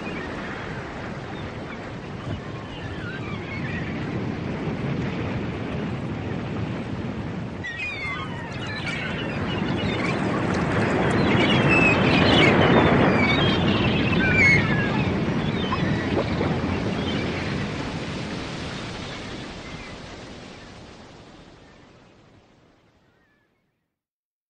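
Ocean surf, a steady wash of waves that swells to its loudest about halfway and then fades out to silence near the end, with short high chirps over it in the middle.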